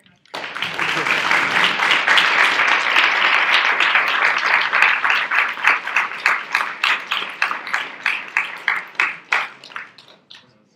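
Audience applauding: a burst of dense clapping starts suddenly, then thins out into scattered single claps that die away over the last few seconds.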